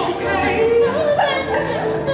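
A musical number: voices singing a song with instrumental accompaniment.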